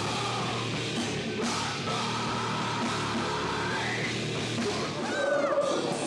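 Heavy metal band playing live: distorted electric guitar and drum kit, with a vocalist yelling into a microphone.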